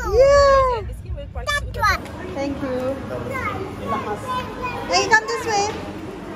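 A young child's high voice rises and falls over the low rumble of a moving car. About two seconds in, that sound cuts off and gives way to fainter children's voices and chatter in an indoor play centre.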